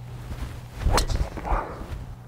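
A golf driver striking a teed ball: one sharp crack about a second in. It is a solidly struck drive.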